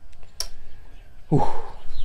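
A single sharp click from a bicycle chain being worked by hand, then a man's loud exhale, 'uf', about a second later.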